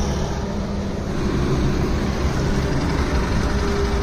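Honda Unicorn 160's single-cylinder engine running steadily, a low hum under a steady rush of wind and road noise.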